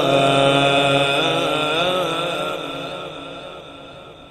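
A male qari's voice in melodic Quran recitation (tajweed), drawing out a long, wavering line without clear words. It fades away over the last second and a half.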